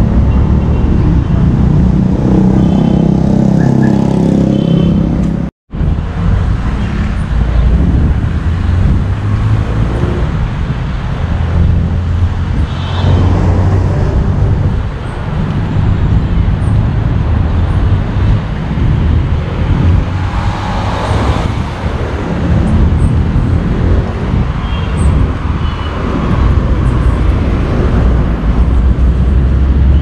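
Street traffic along a city avenue: a steady mix of car engines and tyres, swelling as vehicles pass, broken by a momentary total dropout about five and a half seconds in.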